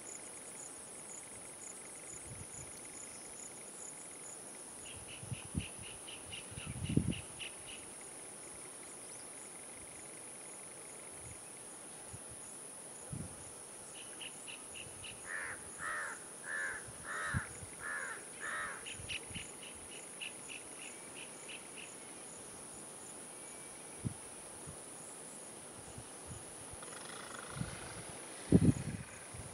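Steady high-pitched chirring of crickets, with bird calls over it: short rapid trills several times and a run of about six louder calls around the middle. A few low thuds, the loudest about a quarter of the way in.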